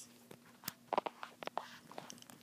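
Quiet handling sounds of rubber loom bands being twisted around fingers over a plastic Rainbow Loom: a scatter of small clicks and taps, most of them in the second half, over a faint steady hum.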